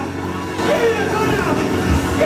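Loud live gospel worship music: a steady low bass drone runs throughout, with voices singing and calling out over it.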